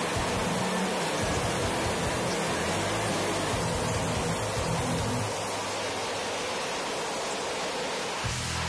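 Fighter jet engine running at full afterburner during a tethered ground run, a loud, steady rush of noise.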